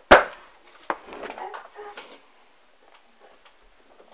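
A loud sharp knock, then a smaller click about a second later and soft rustling with faint clicks as hair and hairpins are handled close to the phone's microphone.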